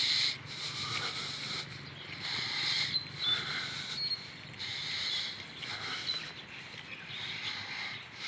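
A man's breathing close to the microphone while he walks briskly for exercise, one breath about every second.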